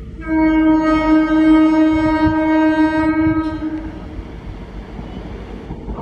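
Indian Railways ICF-built EMU commuter train sounding one long, steady horn blast of about three seconds, which starts just after the beginning, over the rumble of trains running on the track. A second blast starts at the very end.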